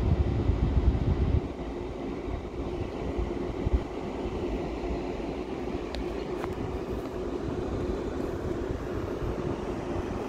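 Wind buffeting the microphone in a loud low rumble for about the first second and a half, easing into a steadier, quieter outdoor rumble.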